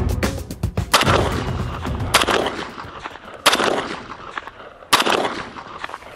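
Winchester M1 carbine firing .30 Carbine rounds, four single shots about one and a quarter to one and a half seconds apart, each ringing out and fading.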